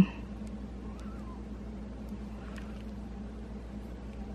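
Steady low electrical hum with faint background hiss, broken by a few faint light ticks.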